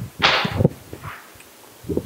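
A textbook page being turned, a short paper rustle close to the handheld microphone about a quarter second in, followed by quiet room tone.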